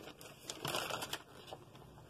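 Products and packaging being handled in a cardboard box: soft rustling with a few light knocks and clicks, busiest from about half a second to a second in.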